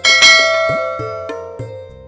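A bright bell chime, struck once with a sudden attack and then ringing out, fading slowly. It plays over light background music with short plucked notes.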